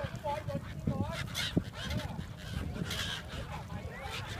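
A flock of gulls calling, with short squawks and a couple of sharper, high cries about a second and a half in and near the end, over people's voices chattering.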